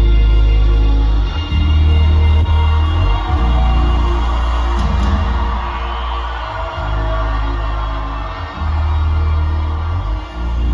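Live concert music played loud through a Pro Audio Technology home-theater speaker and subwoofer system, heard in the room, with deep bass notes held for a second or two at a time.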